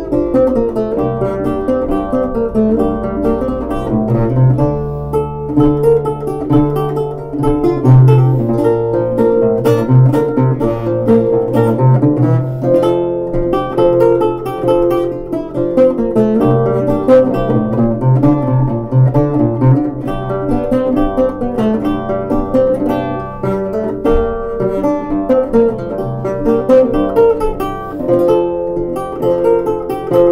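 Solo Renaissance lute played fingerstyle: a passamezzo, with a plucked melody over a bass line, running on without a pause.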